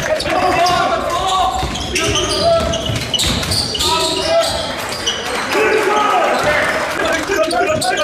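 Basketball game sounds in a sports hall: a basketball bouncing on the wooden gym floor as it is dribbled, mixed with voices of players and spectators.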